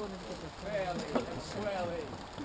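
Indistinct voices of nearby onlookers talking, with no clear words.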